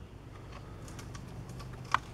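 Faint, scattered light clicks and taps of a plastic action figure being set and settled onto its plastic display stand, with one sharper click near the end.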